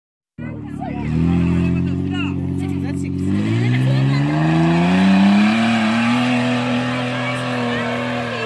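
An off-road SUV's engine working hard as it drives up a steep dirt slope. Its pitch climbs from about three seconds in, then holds high and steady. Voices call out over the engine in the first few seconds.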